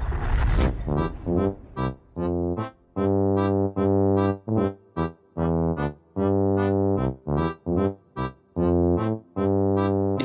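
Background music on a keyboard: short chords in a stop-start rhythm, cut off again and again by brief silences. A short burst of noise comes in the first second.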